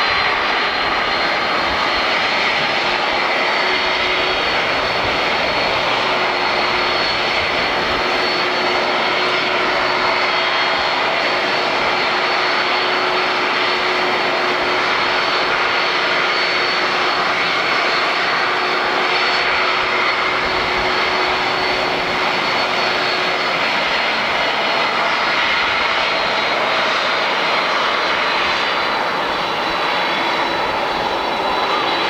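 Boeing 747-400's four GE CF6-80C2 turbofan engines at taxi power: a steady, loud jet rumble and hiss with a high whine held throughout. A lower hum fades out about two-thirds of the way through.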